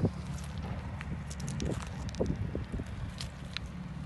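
Steady low wind rumble on the microphone outdoors, with scattered light clicks and rustles of handling.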